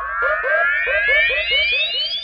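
Hardstyle build-up with the kick drum dropped out: a layered synth riser sweeping steadily upward in pitch over a repeating synth note pulsing about five times a second.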